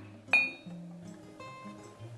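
Two ceramic mugs knocking together once in the hands, a single short ringing clink about a third of a second in, over soft background music.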